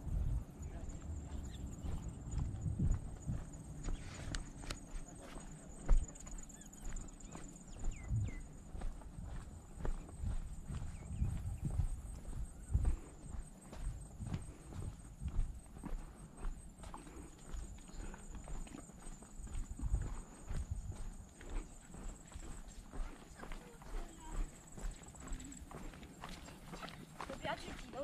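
Footsteps on a paved walkway heard from a body-worn action camera: irregular dull thuds, roughly one or two a second, the loudest about six seconds in.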